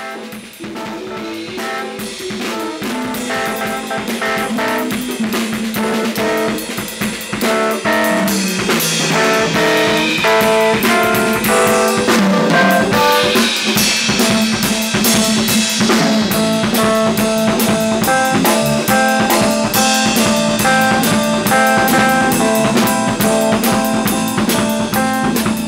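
Rock-funk band music: a drum kit played with guitar and keyboard notes over it, swelling in volume over the first several seconds and then holding steady.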